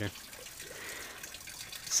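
Faint, even background hiss with no distinct event standing out.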